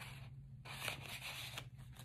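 Faint rustling and rubbing of paper as the pages and paper cards of a handmade lace-and-paper junk journal are handled and turned.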